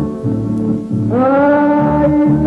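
Ranchera music with mariachi accompaniment: a stepping low bass figure, then about a second in a long held high note swells in, scooping up at its start.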